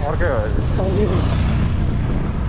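Steady low rumble of wind buffeting the camera microphone, with a man's voice briefly in the first second.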